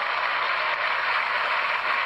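Studio audience applauding steadily, heard thin and narrow through a television speaker.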